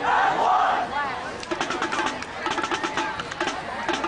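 Several voices yell and cheer for about the first second. After that comes a fast, even run of sharp clicks with a rhythmic knocking beneath it, like a percussion cadence or cheer.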